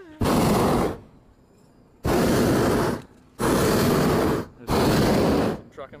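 Hot air balloon's propane burner firing in four blasts of about a second each, a loud, steady rushing noise that switches on and off abruptly.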